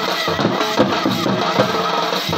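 Bengali folk band playing an instrumental Bhawaiya tune: two-headed barrel drums (dhol) beaten with hands and sticks in a steady, driving rhythm under a held, reedy melody line.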